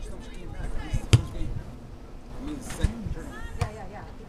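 A soccer ball kicked hard: one sharp thump about a second in, followed by a couple of lighter knocks. Distant voices of players and spectators call out over it.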